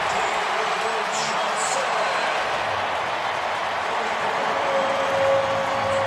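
Stadium crowd cheering a touchdown: a steady, even wash of many voices.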